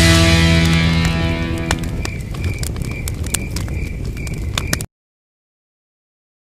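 A music chord rings out and fades over about two seconds. It leaves a campfire crackling with scattered sharp pops and a high chirp repeating about twice a second. The sound then cuts off abruptly about a second before the end.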